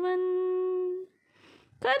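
A woman's voice singing a Tamil devotional song unaccompanied, holding one long steady note that ends about a second in. After a short pause with a faint intake of breath, the next line starts near the end.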